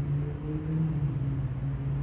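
A steady low hum that wavers slightly in pitch, over a constant low rumble.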